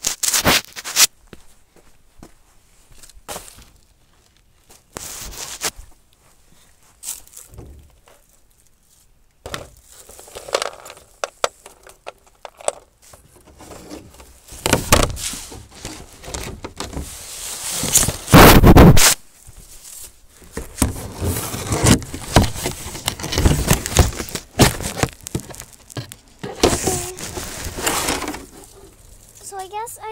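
Irregular rustling and crackling with scattered knocks from close handling of the recording phone and rummaging through dry leaves. The loudest burst comes a little past halfway.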